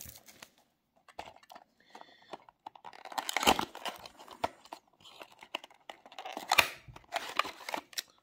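Small cardboard diecast-car box being opened by hand: card flaps rustling and tearing in irregular bursts, with sharper crackles about three and a half and six and a half seconds in.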